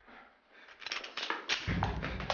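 A quick run of sharp knocks and clicks starting about a second in, with a heavier thud among them.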